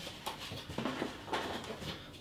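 Cardboard packaging and a camera neck strap being handled: soft rustles and a few light taps as the strap is lifted out of its box tray.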